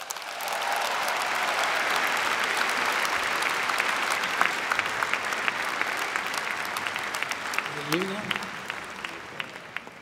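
Large audience applauding, thick with individual hand claps. It swells within the first second, holds, and thins out toward the end, with a brief voice heard about eight seconds in.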